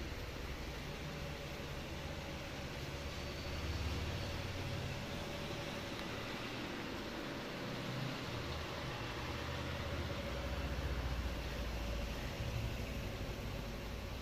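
Steady room background noise: an even hiss with a faint constant hum, under low rumbles that swell and fade, strongest about four seconds in and again near the end.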